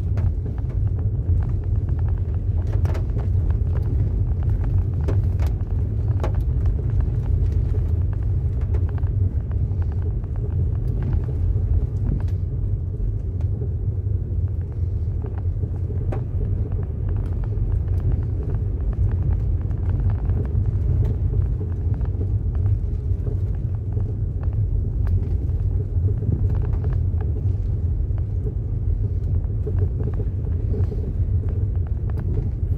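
Cabin road noise of a vehicle driving on a wet dirt road: a steady low rumble from the engine and tyres, with scattered small clicks.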